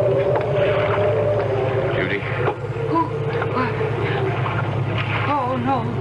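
Sound effect of a motor torpedo boat's engine running steadily at sea, with a slowly wavering tone over it and shakier pitched sounds near the end.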